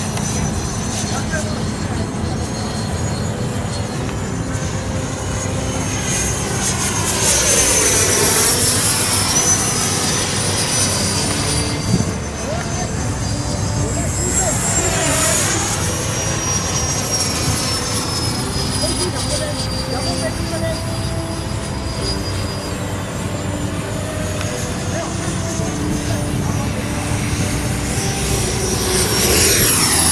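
Small gas-turbine engine of a radio-controlled scale F-16 model jet whining steadily as it flies past, its high pitch drifting down. It swells louder on passes about eight and fifteen seconds in and is loudest on a low pass near the end.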